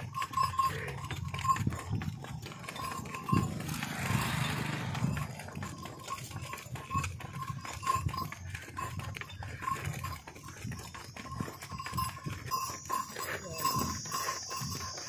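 Hallikar bull walking on a lead rope, with hoof steps and scuffs on the ground. A thin, high tone pulses about twice a second throughout.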